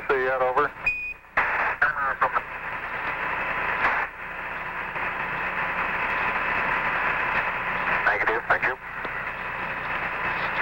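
Apollo mission radio loop: Houston's transmission ends and a short high beep, the Quindar tone, marks the release of the key. A steady hiss of radio static follows, broken by brief faint voice fragments about two seconds in and again about eight seconds in.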